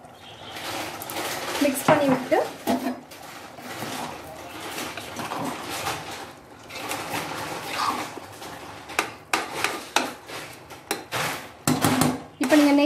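A spoon stirring and fluffing cooked basmati rice in an aluminium pressure cooker, scraping through the rice and against the pot. There are several sharp taps of the spoon on the pot near the end.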